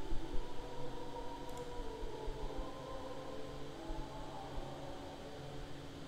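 Faint room noise with a steady low hum, and faint wavering tones in the background.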